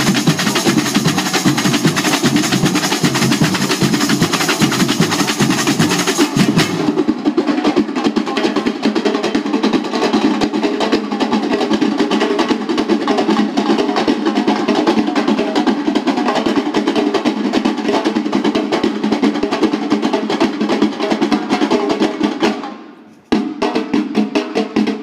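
Samba bateria playing a dense, driving batucada on tamborims, surdos, snare drums and other hand percussion. The sound changes abruptly about seven seconds in, and the playing drops away briefly about a second before the end, then starts again.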